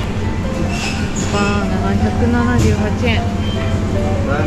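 Voices talking over background music, with a steady low rumble underneath.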